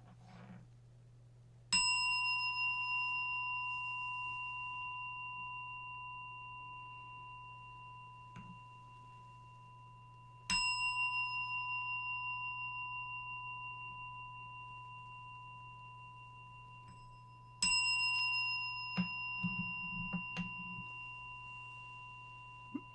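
A meditation bell struck three times, about eight seconds apart, each strike ringing on in a clear, pure tone that fades slowly, rung before the closing chant.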